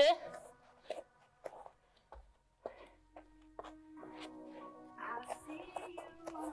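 Soft background music with held notes, with a few faint taps and shuffles of hands and feet on an exercise mat in the first couple of seconds.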